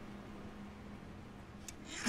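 Quiet room tone: a low, even hiss under a faint steady hum, with one small click near the end.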